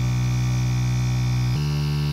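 Electronic music: a held low synthesizer bass note that steps up to a higher note about one and a half seconds in.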